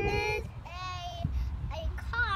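A young child's high-pitched, drawn-out sing-song voice: a held call at the start, then a second wavering call that ends about halfway through.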